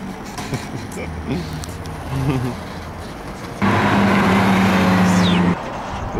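Low vehicle traffic rumble. A little past halfway, a much louder steady humming noise cuts in and cuts off abruptly about two seconds later.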